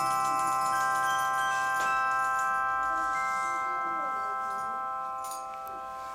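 Suspended small metal cymbals and bells ringing out together after being struck, a chord of many steady metallic tones slowly fading away. A single faint knock comes about two seconds in.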